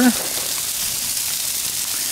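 Brussels sprouts and broccoli frying on a hot flat-top griddle, a steady sizzle.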